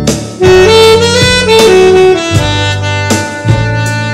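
Selmer Mark VI alto saxophone with a Vandoren Jumbo Java mouthpiece and a Legere reed, playing a phrase of held notes that steps up and then back down, ending a little past halfway. Underneath is a backing track with a bass line and a drum beat.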